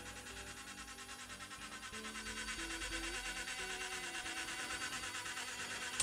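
Small electric lift motor of a toy-grade Ao Hai 1/8-scale RC forklift raising the forks, a faint steady buzz that grows slightly louder about two seconds in. The lift is struggling, which the owner puts down mainly to an uncharged battery and to the fork carriage not sliding smoothly in its rails.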